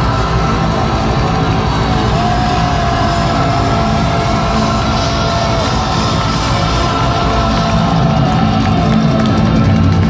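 Black metal band playing live, recorded from within the crowd: dense distorted guitars and drums, with a long held high note coming in about two seconds in and another later on.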